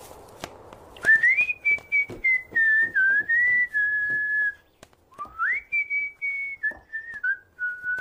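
A man whistling a tune: two phrases of stepped notes with a short break about halfway, a carefree whistle by someone in a good mood.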